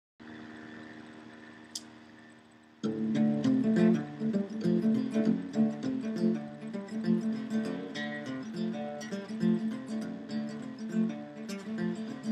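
Acoustic guitar intro: a chord rings out and slowly fades, with one short click, then about three seconds in the guitar starts a steady, rhythmic strummed and picked pattern that carries on.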